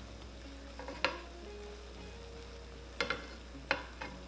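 Chicken wings sizzling and bubbling in a honey sauce in a frying pan, a steady low hiss. Metal tongs turning the wings click against the pan about a second in and twice near the end.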